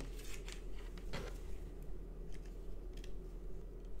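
Crinkling of plastic and cardboard packaging, with scattered sharp crackles and clicks, as a 9V battery is pulled out of its blister pack. A faint low hum runs underneath.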